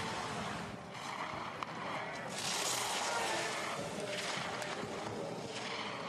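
Giant slalom skis carving and scraping through turns on hard snow: a hissing swish that swells twice in the middle.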